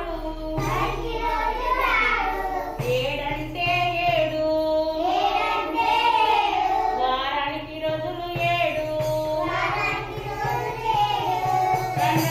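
A counting song for young children being sung, a flowing melody with some long held notes, to the accompaniment of a kanjira frame drum and its jingles.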